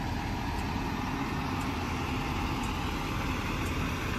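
Steady low rumble of a motor vehicle engine running, under outdoor background noise.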